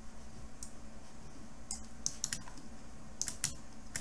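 A dozen or so light, scattered clicks from a computer's mouse and keyboard being worked, some in quick pairs, over a faint steady low hum.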